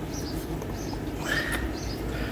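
Birds chirping in the background, with one short whistled note about one and a half seconds in, over a steady low background rumble.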